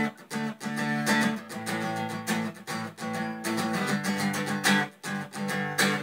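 Solo acoustic guitar strumming chords in a steady rhythm, the notes ringing between strokes, as the instrumental lead-in to a song.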